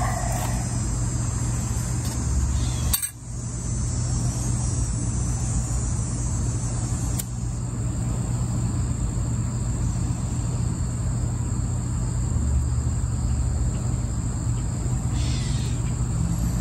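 Outdoor summer ambience: a steady high-pitched insect drone over a constant low rumble. The sound briefly drops out about three seconds in.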